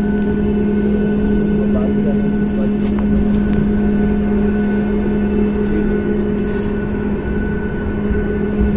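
Airliner cabin noise heard from a passenger seat during landing: a loud, steady rumble of engines and airflow with a low hum. A few sharp clicks sound about three seconds in.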